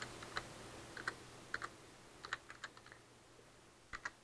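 Faint, irregular keystrokes on a computer keyboard, coming in small clusters and thinning out after about three seconds, with a sharper pair of clicks at the very end.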